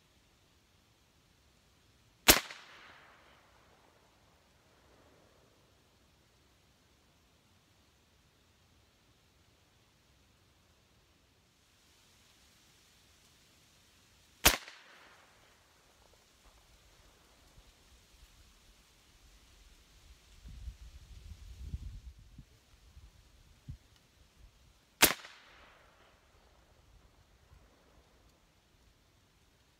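Three shots from a .357 AirForce Texan big bore air rifle, roughly eleven seconds apart, each a sharp report with a short trailing decay. A low rumble comes between the second and third shots.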